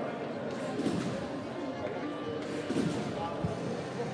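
Indistinct voices in a large sports hall, with a few light knocks.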